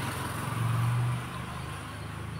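A motor vehicle's engine on the street outside, a steady low hum that swells briefly and then eases off as it passes.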